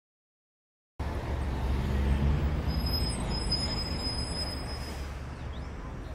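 Street traffic ambience: a steady low rumble of road vehicles that starts about a second in and slowly eases down.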